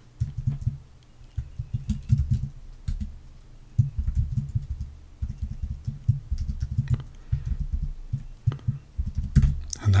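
Typing on a computer keyboard: runs of quick keystrokes, with a short pause about three seconds in and another about five seconds in.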